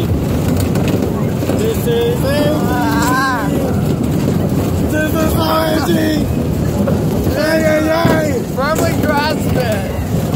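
Steady loud rumble and wind buffeting on the microphone of a phone carried on a spinning Tilt-A-Whirl ride, with riders whooping and laughing over it in three bursts.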